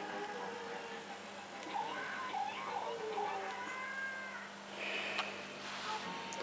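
Cartoon soundtrack playing through the small speaker of a Record V-312 black-and-white tube TV: cat-like meows and gliding squeals, over a steady low hum.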